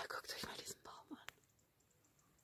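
A woman whispering a few words close to the microphone in the first second or so, ending with a short click, then low background hiss.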